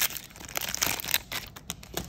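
A Magic: The Gathering booster pack's foil wrapper being torn open and crinkled by hand: a quick run of crackling rips and crinkles, busiest in the first second or so.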